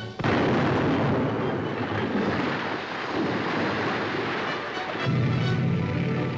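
A sudden loud blast and a long rumble, as of rock being blasted for a road cut, lasting about five seconds over music; the music stands out alone near the end.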